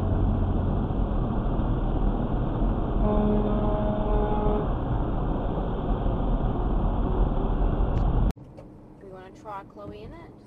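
Steady road and engine noise heard from inside a vehicle in slow highway traffic, with a vehicle horn sounding one steady note for about a second and a half, about three seconds in. Near the end the noise cuts off suddenly into a much quieter recording.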